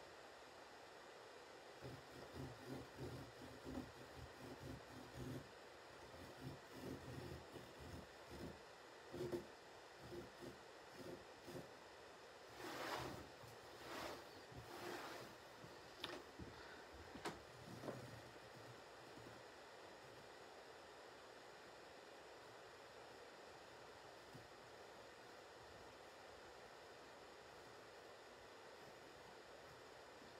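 Near silence. Faint rustling and a few light knocks come from a felt-tip marker and hands working over linen rug backing on a wooden table through roughly the first half. After that there is only faint room hiss.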